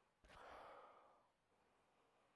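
A man sniffing a glass of dark home-brewed brown ale to smell its aroma. One faint, long inhale through the nose starts about a quarter second in and fades after about a second.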